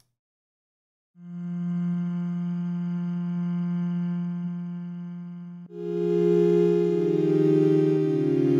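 Sampler pad made from a looped, sustained vocal tone. A single held note starts about a second in and slowly fades. About two-thirds of the way through, a chord of several notes comes in and is held.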